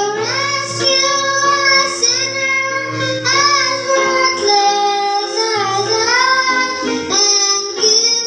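A young girl singing a hymn melody into a microphone, holding each note for about a second, over instrumental accompaniment.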